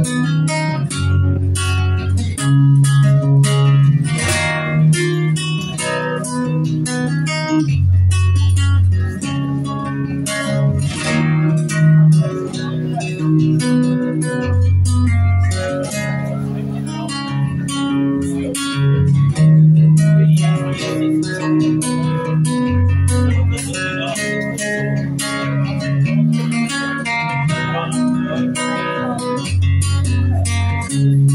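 Solo acoustic guitar playing an instrumental piece: a steady flow of plucked notes over chords, with a deep bass note every seven seconds or so.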